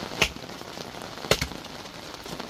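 Wood campfire crackling, with two sharp pops, one just after the start and one about a second later, over a steady hiss of rain.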